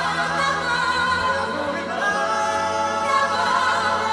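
Several singers' voices singing together in harmony on sustained notes with vibrato, from a live concert medley performance.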